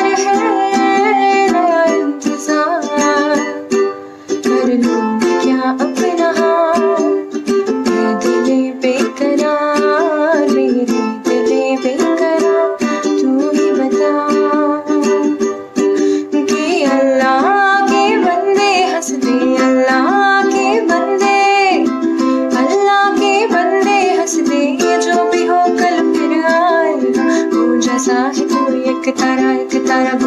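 A woman singing Bollywood film songs to her own strummed ukulele accompaniment, the strumming steady throughout.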